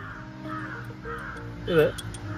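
A crow cawing once, loudly, near the end, over steady background music.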